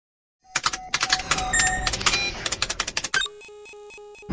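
Electronic sound effects of a news channel's logo intro: a rapid run of clicks and short high pings, then, about three seconds in, a steady electronic tone pulsing several times a second.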